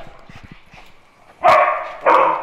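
A dog barks once, loud and sudden, about one and a half seconds in, after a quieter stretch.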